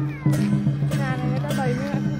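Traditional festival music: a steady drum beat over a sustained low drone, with a high, wavering, bending melody line above it.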